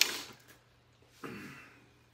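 A woman's breath sounds: a sharp, loud exhale at the start, then a short, quieter breathy vocal sound about a second later.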